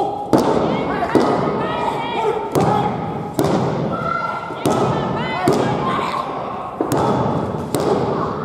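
A wrestling ring's canvas thudding about once a second as the wrestlers struggle through pin attempts and the referee slaps the mat to count. Voices shout between the thuds.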